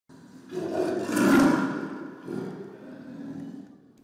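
Black panther (melanistic leopard) growling: one long rough growl swells about half a second in and fades by two seconds, then a shorter, weaker one follows. The animal is restless and unsettled in its new enclosure.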